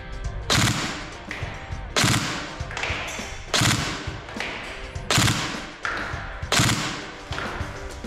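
Tokyo Marui next-generation electric MP5SD6 airsoft gun firing in three-round burst mode: five short bursts about a second and a half apart, each a quick rattle of the gearbox and recoil-engine weight.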